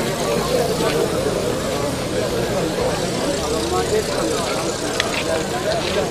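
Crowd chatter: many men talking at once, a steady babble of overlapping voices with no single voice standing out.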